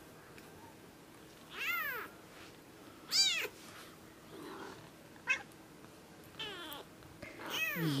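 Newborn kittens mewing: a handful of short, high-pitched cries, each rising then falling in pitch, two louder ones in the first half and fainter ones after.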